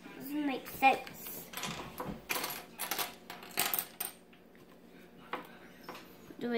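Loose plastic LEGO bricks clattering and clicking in a quick series of short rattles as pieces are handled on a table, after a brief vocal sound from a child at the start.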